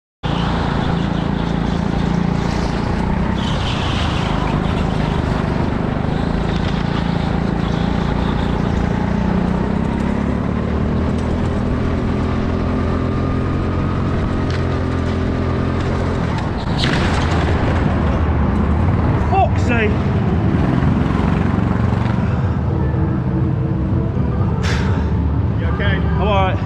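Go-kart engine running steadily as heard from the kart's onboard camera, with a sharp knock about two-thirds of the way in, after which the sound grows louder. Short shouted voices come near the end.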